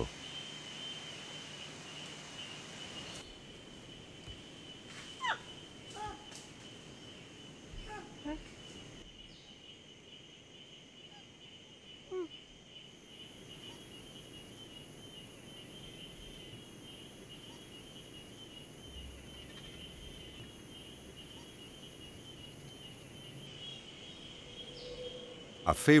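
Tropical forest ambience: a steady, high insect drone throughout, joined by a second, higher-pitched insect buzz for about ten seconds in the middle. A few short chirping calls come between about five and twelve seconds in.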